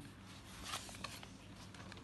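Paper rustling faintly as notebook pages are turned, strongest for about half a second near the middle, with a few small ticks.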